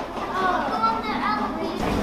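Children's voices talking, high-pitched, words not made out.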